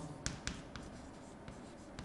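Chalk writing a word on a chalkboard: a few sharp taps in the first second, then faint scratching strokes.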